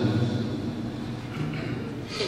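A man's chanted Quran recitation breaks off at a phrase end, its last note dying away in a reverberant hall, leaving a low murmur of room sound with one brief faint voice sound about one and a half seconds in.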